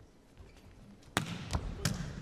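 A volleyball being struck: three short, sharp smacks of hand on ball, the first a little past a second in, over faint indoor hall ambience.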